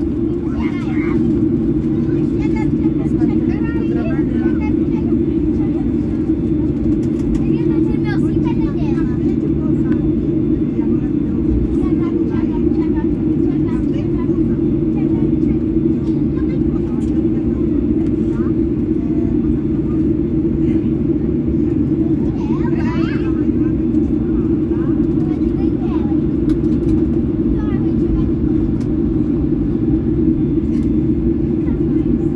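Cabin noise inside a taxiing Boeing 737-800: a steady low drone from the engines at taxi power and the air conditioning, with passengers talking faintly in the background.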